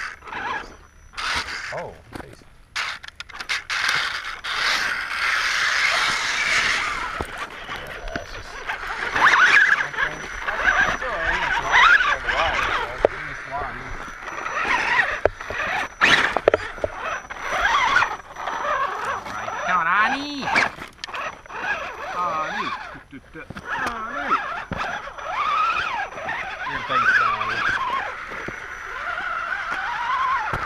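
Electric RC rock crawlers (an Axial Wraith and a Losi Twin Hammers) climbing over rocks. The motors and gears whine, rising and falling in pitch with the throttle, and there are scattered knocks and scrapes of tyres and chassis against the rock.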